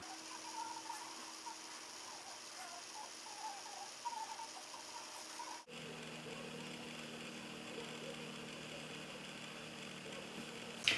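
Quiet room tone: a faint steady hum with no distinct events. The background hum changes abruptly a little past halfway.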